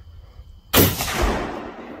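A single loud .30-06 rifle shot about three-quarters of a second in, its report dying away over the following second.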